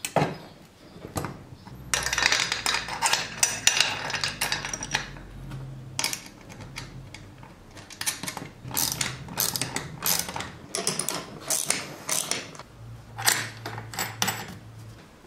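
Metal parts and hand tools clinking, scraping and rattling as brass valves and copper pipe are handled and fastened to steel strut channel, with ratchet-like clicking. The sounds come in irregular clusters and are busiest a couple of seconds in.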